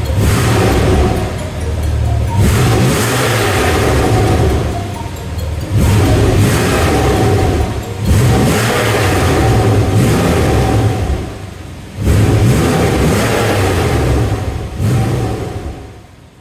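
Porsche 911 (991) Carrera S's 3.8-litre flat-six, heard at its twin tailpipes, is free-revved five times while the car stands still. Each rev is held for a couple of seconds before dropping back, and the sound fades out at the end.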